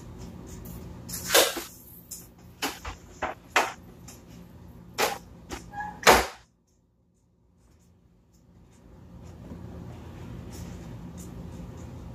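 Folding step stool being handled and opened out: a run of sharp clacks and clicks, the loudest about a second in and again about six seconds in. The sound then cuts out suddenly for a moment before a steady low room hum returns.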